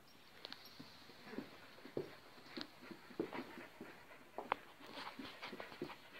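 A dog making short, irregular whining sounds, the sharpest about four and a half seconds in.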